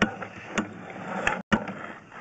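Drain inspection camera's push rod being pulled back through the pipe: three sharp clicks and knocks over a steady low hum, with the sound cutting out for an instant about halfway through.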